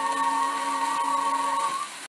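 The closing held chord of a slow-fox played from a 78 rpm shellac record, with steady surface hiss underneath. The chord dies away near the end.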